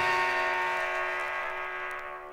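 A noise-punk band's final chord ringing out after the song stops abruptly, several sustained notes fading away steadily.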